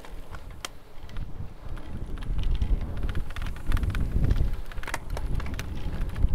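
Wind rushing over the microphone of a cyclist riding, a low rumble that grows louder as the bike picks up speed, with a few light clicks.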